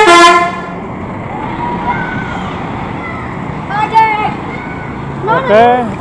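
A bus's musical 'telolet' multi-note horn plays the last notes of a stepping tune and cuts off about half a second in. Steady street traffic noise follows, with a few short voices calling out.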